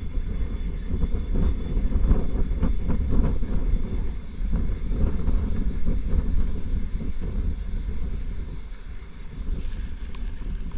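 Bicycle ride heard from a handlebar camera: a steady low rumble of wind on the microphone and tyres rolling on asphalt. Near the end the tyres go onto brick paving and the sound turns hissier.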